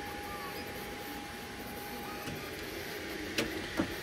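Elegoo Neptune 4 Max 3D printer starting a print, running with a steady hum. Two sharp clicks come about half a second apart near the end.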